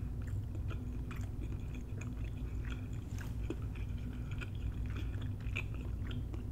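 Close-miked chewing of tender braised oxtail meat, with small wet clicks and smacks at irregular intervals, over a low steady hum.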